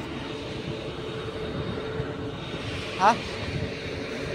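Steady outdoor background noise with a faint constant hum. A man says a single word about three seconds in.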